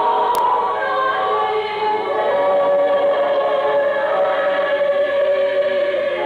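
A mixed choir of men and women singing in harmony, settling into long held notes about two seconds in.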